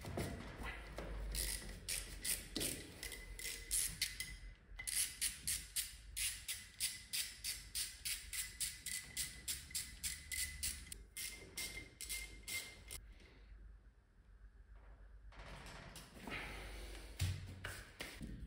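A hand tool working the old cylinder block of a Honda PCX 125 engine: a long run of short, sharp metal strokes at about two to three a second, stopping about 13 seconds in, followed by quieter handling of the parts.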